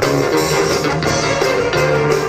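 Live big band jazz: saxophones, trumpets and trombones playing together over a rhythm section with a steady beat.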